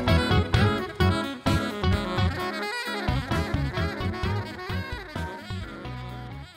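Funk jam: a saxophone plays the lead over a Harley Benton Amarok 6 baritone electric guitar played through an octaver. The music slowly gets quieter toward the end as the piece fades out.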